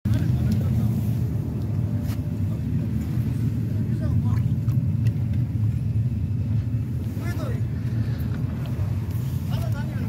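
Steady low rumble of a boat's engine running.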